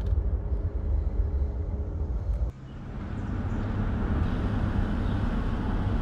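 Car cabin noise, a steady low engine and road rumble, cuts off about two and a half seconds in. It gives way to a car driving along a street, its engine and tyre noise growing louder as it approaches.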